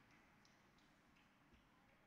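Near silence: faint room tone with a few soft, irregular ticks.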